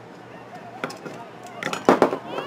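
Distant shouting voices of girls' lacrosse players across an open field, with a few sharp knocks and one much louder knock near the end.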